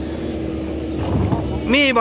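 A motor engine running at a steady pitch in the background, with a person's voice starting near the end.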